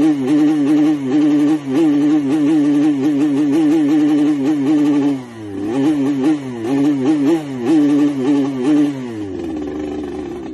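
Motorcycle engine under way, revved in quick repeated throttle blips so its pitch rises and falls about twice a second. It drops off briefly about five seconds in, picks up again with more blips, then winds down near the end.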